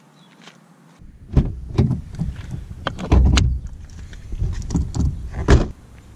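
Car door being opened and shut, a series of clicks and thuds ending in one loud thud near the end, as the bonnet release inside the car is pulled. A low rumble runs under it.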